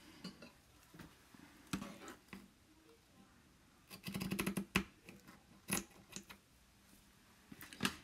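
Scissors cutting through burlap: a short run of rapid ticks as the blades go through the coarse weave about four seconds in, with a few single clicks of handling before and after.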